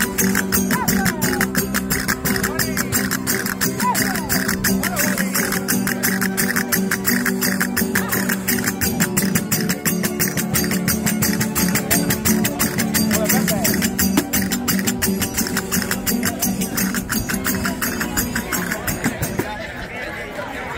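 A verdiales folk band playing live: strummed guitars over fast, even strikes of percussion, with voices mixed in. The music stops just before the end.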